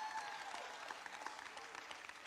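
Church congregation applauding in response to a sermon line, the applause fading over the two seconds.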